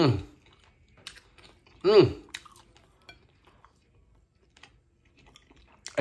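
A man chewing a mouthful of roast pork shoulder, with faint wet mouth clicks. He gives two short appreciative "mm" hums, one at the start and one about two seconds in.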